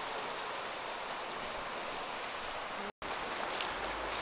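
Steady wash of small waves over a rocky cobble shore, an even hiss with no calls or voices. It cuts out for a moment about three seconds in, then carries on.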